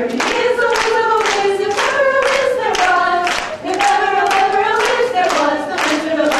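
A group of voices singing a song together while the audience claps along in a steady beat, about two claps a second.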